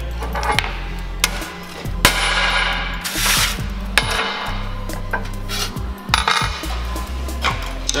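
Hand hammer tapping and clanking on sheet-steel sill repair panels laid on a steel workbench, with metal pieces and tools knocking against the bench top. There are many sharp strikes at an uneven pace, with one louder clang about three seconds in.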